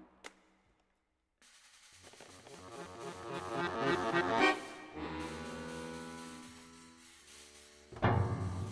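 Free-improvised music from an accordion, piano and trumpet trio. After a click and a moment of near silence, a dense cluster of tones swells to a peak about four and a half seconds in. It then gives way to a steady held chord of several tones that slowly fades.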